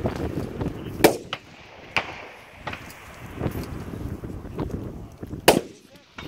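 Rifle shots on an outdoor range: two sharp, loud cracks, about a second in and near the end, the second the louder, with a few fainter knocks between.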